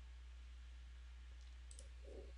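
Two quick computer mouse clicks close together near the end, over a steady low hum.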